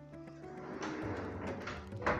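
Background music with sustained tones, and in the middle a drawer running shut on metal ball-bearing telescopic slides.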